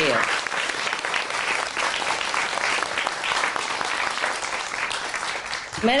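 A room full of people applauding, many hands clapping steadily for about six seconds.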